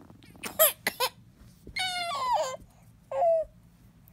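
A six-month-old baby's high-pitched vocalizing: a few short sounds about half a second in, then a longer gliding squeal about two seconds in and a shorter falling one about a second later.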